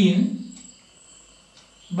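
A man says one word, then a marker writes faintly on a whiteboard. A thin, steady high-pitched tone runs underneath.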